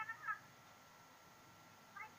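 Short, high-pitched sliding calls at the very start and again near the end, over faint room noise with a thin steady whine.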